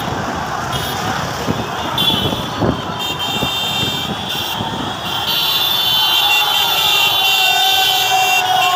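Busy city road traffic heard from a moving vehicle: motorcycle engines and the noise of passing traffic. A shrill, steady horn-like tone joins about five seconds in.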